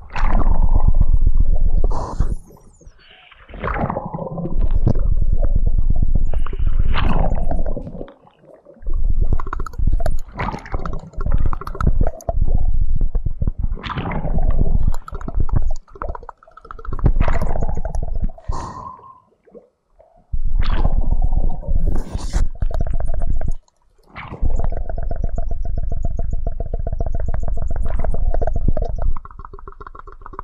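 Flute playing mixed with water gurgling and bubbling, in irregular loud swells broken by short gaps. A steady held flute tone sounds near the end.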